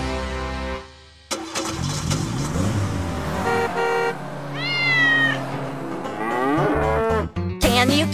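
Cartoon sound effects: a car driving past with a short horn honk, then a cat meowing with a high, falling call. A children's music chord fades out about a second in and the music starts again near the end.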